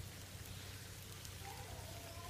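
Faint, steady pattering and rustling of a pen full of farmed crickets crawling and feeding over a metal feed trough and dry banana leaves.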